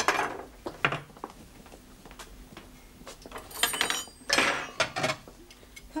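China crockery and cutlery clinking and clattering as a table is laid: a few scattered knocks, with the brightest, ringing clink about three and a half seconds in.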